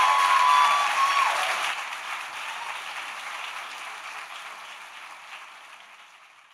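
Large audience applauding, fading out over several seconds. A long held tone sounds above the clapping for the first second or so.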